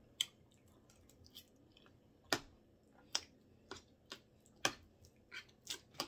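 Close-miked eating sounds: chewing with a dozen or so short, sharp mouth clicks and smacks scattered through, the loudest about two, three and four and a half seconds in.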